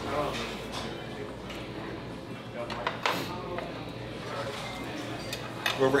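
Knife and fork clinking and scraping on plates as steak is cut, a few short clicks, over a low murmur of voices.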